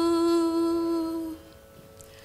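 A woman singing Carnatic classical music holds one long, steady note, which stops about a second and a half in, leaving a quiet pause.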